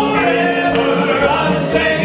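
Male southern gospel vocal trio singing in harmony through handheld microphones and PA speakers, over a low instrumental accompaniment.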